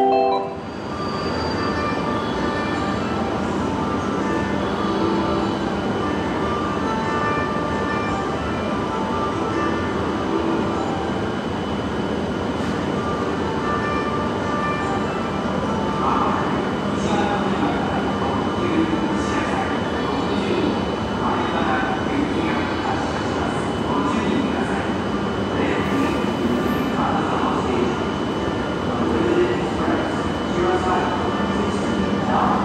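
Electric limited express train with a GTO-VVVF inverter drawing slowly into a station platform: steady running noise with a constant electrical whine under it.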